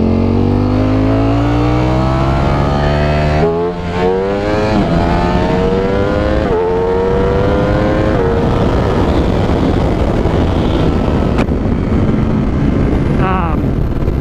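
2021 Ducati Streetfighter V4's 1103 cc V4 engine pulling hard up through the gears, its pitch climbing steadily and dropping briefly at each of several quick upshifts. After about eight seconds, at highway speed, wind rush on the microphone drowns out the engine.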